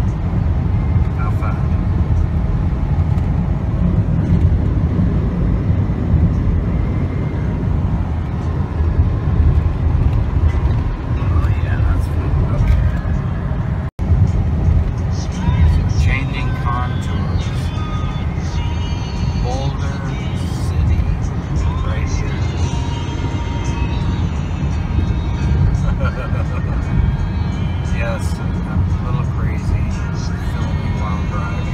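Steady low road and engine rumble inside a truck's cabin while driving on the highway. The sound cuts out for an instant about halfway through.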